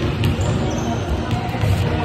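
Basketballs bouncing on a hardwood gym floor, a run of irregular low thuds, with music playing in the background.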